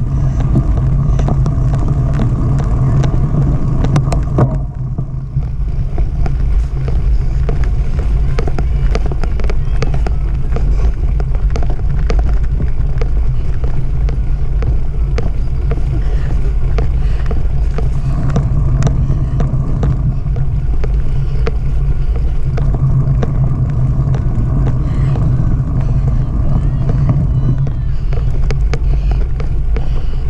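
Steady low rumble of wind and vibration on a moving action camera's microphone as it rides across a bumpy grass course, with the bike rattling over the ground; a sharper knock about four and a half seconds in.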